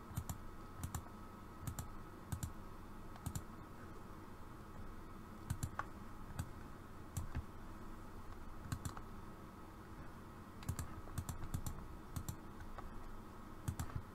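Computer mouse clicking at irregular intervals, roughly one click a second and sometimes two in quick succession, each a short sharp tick, over a faint steady hum.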